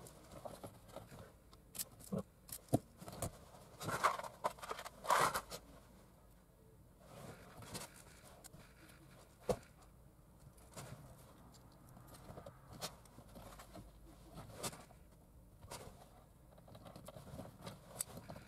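Hands working a car radio wiring harness behind the dash: faint rustling and scraping of wires and plastic connectors, with scattered small clicks. A few louder scrapes come about four and five seconds in, and a single sharp click about halfway through.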